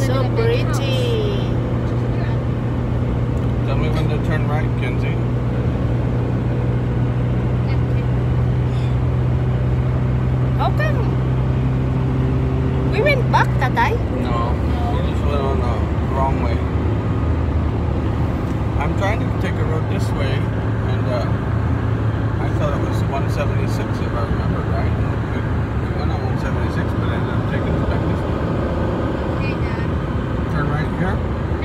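Car cabin noise while driving at highway speed: a steady drone of engine and tyres on the road, heard from inside the car. A steady low hum runs under it and steps down lower about halfway through.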